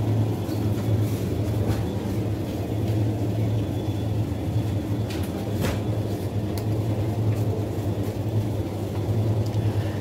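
Supermarket ambience: a steady low hum under a rumbling background, with a few faint clicks.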